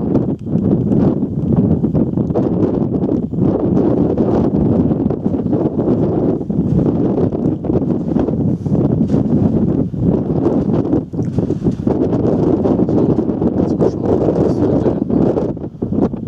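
Wind blowing hard across the camera's microphone: a loud, low, gusty noise that rises and falls without letting up.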